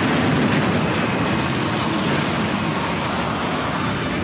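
Film-trailer explosion sound effect: a loud, sustained blast rumble that eases off slightly over the seconds.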